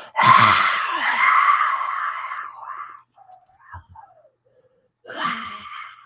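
A person breathing out a long, breathy "haaah" of hot breath for about three seconds, acting out warming a cold nose, with a second, shorter breath near the end.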